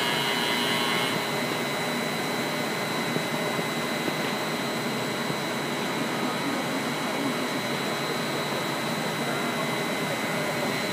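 Polystar Model HA blown film extrusion line running: a steady mechanical hum and rush of air with a thin, steady high whine. A brighter hiss on top stops about a second in.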